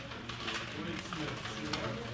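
Indistinct chatter of several people talking at once in a meeting room, with a few light clicks.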